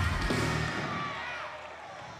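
The church band plays a short musical hit with heavy bass notes that stop within the first second, and the rest trails off under the congregation's shouts and clapping.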